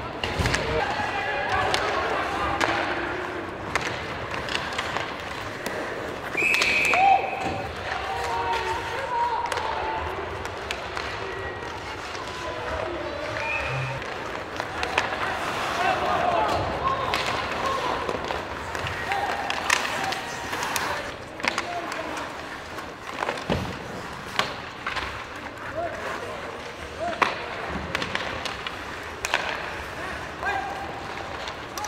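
Live ice hockey play heard from rinkside: sharp clacks and knocks of sticks, puck and boards at irregular moments, over indistinct shouting from players, benches and spectators.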